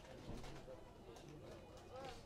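Faint, indistinct voices in the background.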